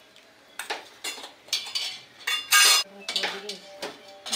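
Steel ladle and steel serving bowls clinking against brass cooking pots as curry is dished out: a string of sharp metallic clinks with a brief ring, the loudest a little past halfway through.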